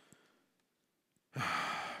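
A man's audible sigh, a short breathy rush of air lasting about half a second, comes after a second of near silence.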